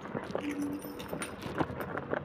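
Footsteps on a hard floor: a series of irregular knocks as someone walks up to a door, with a brief vocal sound about half a second in.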